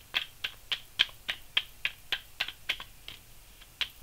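A tarot deck being shuffled by hand, the cards making sharp, even clicks about three or four times a second.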